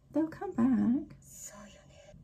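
Speech only: a short line of subtitled Japanese anime dialogue, followed by a brief breathy, whispery stretch.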